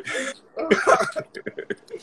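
A man laughing: a breathy burst, then a run of short, quick exhalations that trails off near the end.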